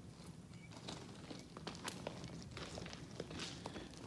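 Faint footsteps on railway track ballast: a scatter of soft, irregular crunches and clicks over a low hum.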